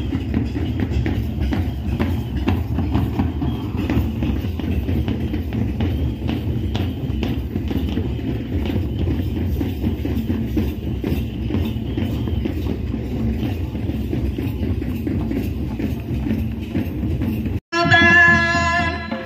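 Folk drumming on drums carried by dancers, heard with the noise of a large outdoor crowd. It is a dense, steady low rumble with many irregular drum strikes, and it cuts out briefly near the end.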